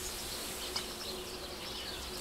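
Faint outdoor background noise with a few faint, short bird chirps.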